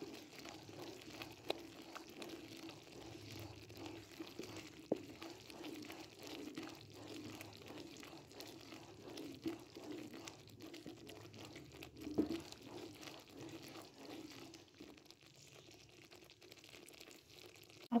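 Thick reduced milk in the final stage of becoming khoya bubbling faintly in a karahi while a wooden spatula stirs and scrapes it, with a few light clicks now and then.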